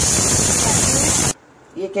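Steam hissing out of a pressure cooker's whistle valve: one loud, steady hiss that starts and stops abruptly and lasts about a second and a half. It is the cooker's whistle, which marks that the raw mangoes inside are boiled through.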